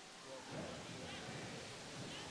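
Faint gymnasium background during a basketball game: a low, steady murmur of crowd and court noise that rises slightly about half a second in.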